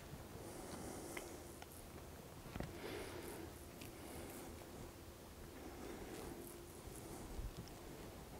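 Faint outdoor background with a weak steady low hum and a few soft, brief clicks.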